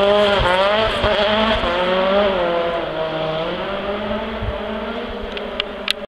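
VW Golf Mk3 kitcar's rally engine revving hard as the car drives away, its pitch climbing and dropping with each gear change or lift, growing steadily fainter. A few sharp clicks near the end.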